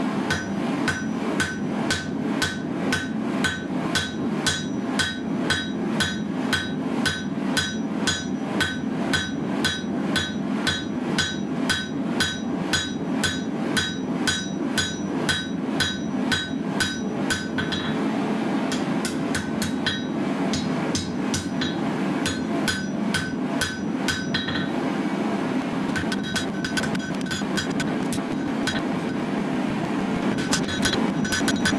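Hand hammer striking red-hot blade steel on an anvil while forging the bevels, about two to three blows a second, each with a short metallic ring. The blows become sparser later on and stop briefly, then resume near the end, over a steady low drone.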